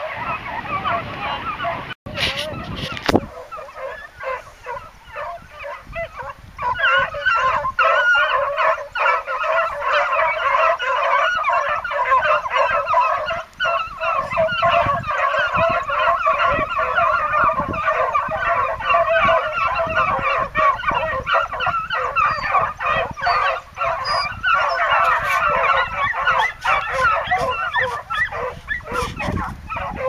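A pack of beagles in full cry, many hounds baying at once in a dense, continuous chorus, thinner for the first few seconds and fuller from about six seconds in. Hounds giving tongue together like this are running on a scent.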